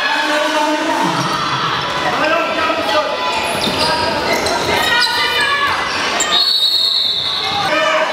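Handball game sounds in a large hall: the ball bouncing on the court, shoes squeaking on the wooden floor and players calling out. A long, steady whistle sounds about six and a half seconds in.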